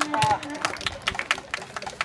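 People talking nearby, with irregular sharp clicks several times a second that ease off toward the end.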